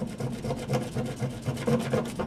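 Plastic scissor handle rubbed back and forth over a plastic mesh sample bag on a wooden tabletop, in quick repeated scraping strokes. It is crushing an orchid leaf inside the bag so that the leaf's juices mix with the test's extraction fluid.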